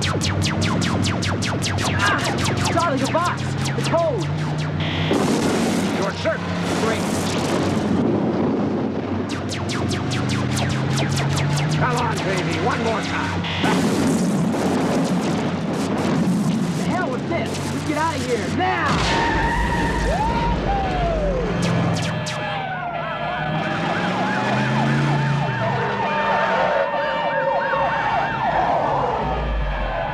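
Action-film soundtrack mix of vehicle engines, repeated crashes and impacts, and music; from about two-thirds of the way in a police siren wails, rising and falling.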